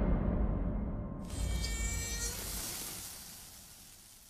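Horror-trailer sound design on the end cards: a deep rumble fading out, with a high, thin buzz for about a second in the middle.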